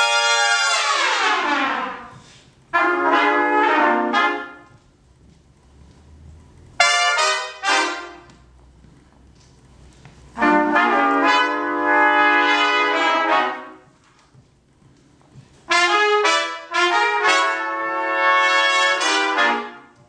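A big-band trumpet section plays short phrases in harmony, five of them separated by brief pauses. The first phrase ends in a long downward fall in pitch.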